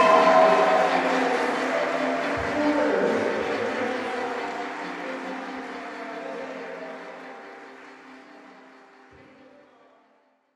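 Audience applause over lingering sustained music in a reverberant hall, fading out steadily to near silence by the end.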